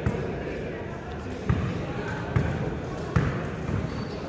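A basketball being dribbled on a hard court, about five bounces spaced roughly a second apart, against a background of voices.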